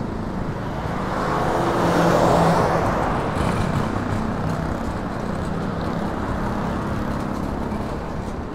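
Street traffic: a car passes, loudest about two seconds in and then fading, over a steady low rumble of road noise.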